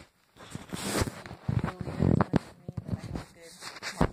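Handling noise of a phone being repositioned: irregular rustles, rubs and small knocks from fingers close to the microphone.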